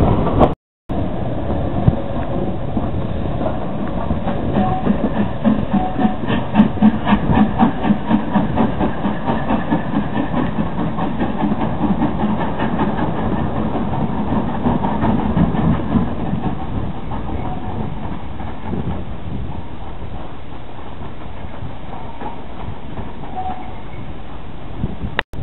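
Steam locomotive hauling a train, its exhaust beats in a quick, even rhythm that grows louder, then fades toward the end as it moves away.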